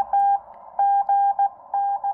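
Morse code (CW) received on a Xiegu X6100 HF transceiver: a single steady tone keyed in short and long marks at a slow speed, over a narrow band of receiver hiss shaped by the CW filter.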